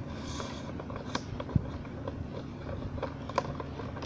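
Handling noise from a phone being adjusted on a tripod: a few scattered clicks and a low knock about a second and a half in, over a steady low room hum.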